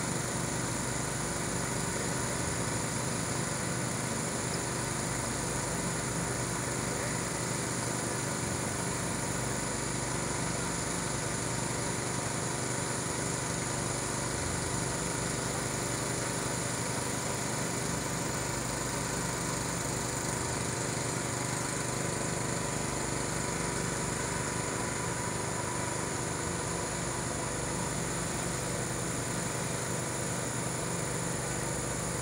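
A motor running steadily, a constant hum with several fixed pitches and an even hiss over it.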